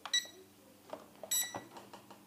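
S160 toy drone's remote controller giving two short, high-pitched electronic beeps about a second apart as it is switched on and pairs (binds) with the drone. A few faint handling clicks come between the beeps.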